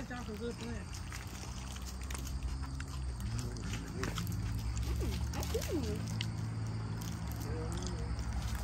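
Faint, indistinct voices and murmurs over a steady low rumble, with a few small clicks.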